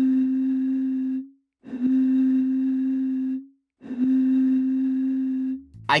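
A sampled seltzer-bottle note played three times from a keyboard, with loop mode on. Each note is a steady, pure-sounding tone of the same pitch, held for about two seconds and separated by short gaps.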